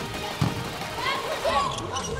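Background music over arena sound, with a sharp thump of a volleyball being struck about half a second in.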